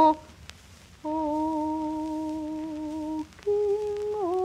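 Music from a 1930s Japanese ryūkōka record: a held note slides down and stops, then after about a second of faint surface crackle two long held notes follow, the second a little higher.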